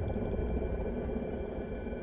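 Film-trailer sound design: a low, dark drone with a few faint steady high tones above it, easing off slightly toward the end.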